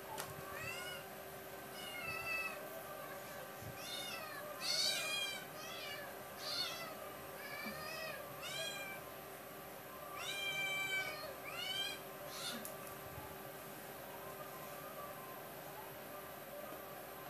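A domestic cat meowing repeatedly: about a dozen short meows that rise and fall in pitch, some louder and longer than others, over roughly twelve seconds, then it falls quiet.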